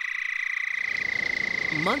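Houston toad calling: one long, high, even trill. A little under halfway through, a steady hiss joins it.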